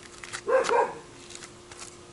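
A dog barking twice in quick succession, about half a second in.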